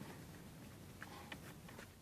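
Faint scattered clicks and light scuffling of Central Asian Shepherd puppies' paws on a wooden floor as they play, with a few small clicks about a second in.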